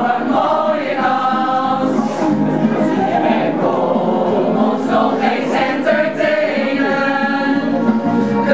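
Mixed group of amateur singers, women and men, singing a song together in unison from song sheets.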